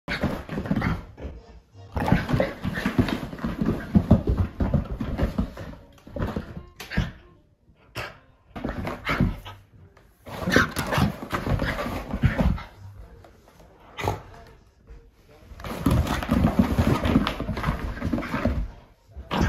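Shiba Inu play-growling and vocalizing during zoomies, in repeated bursts of a second to a few seconds with short pauses between.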